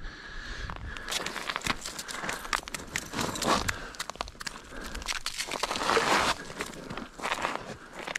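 Irregular crunching and scraping of boots and hands on snow-covered lake ice, with small clicks from fishing gear being handled.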